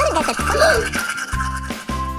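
Cartoon background music, with a toothbrush scrubbing sound effect and a character's wordless vocal sounds in the first second.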